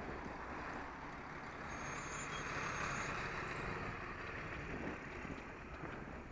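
Double-decker bus engine running close by as the bike passes along its nearside, under steady road and wind noise; it swells slightly midway.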